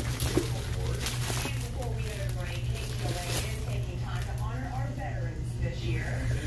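Indistinct speech throughout, over a steady low hum.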